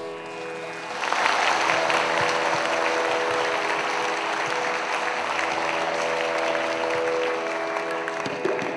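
Audience applause that swells in about a second in and carries on steadily, over a held musical drone of sustained notes.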